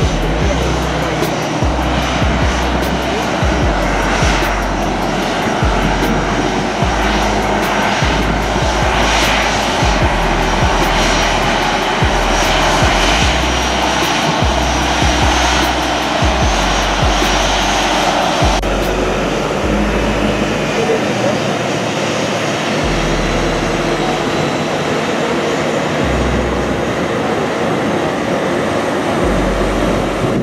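Boeing 737 jet taxiing, its twin turbofan engines running steadily at low power. Background music with a steady bass beat plays over it.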